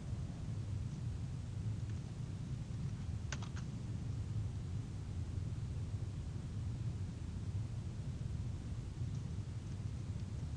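Steady low room hum with a quick cluster of about three keystrokes on a computer keyboard a little over three seconds in, and a few fainter clicks near the end.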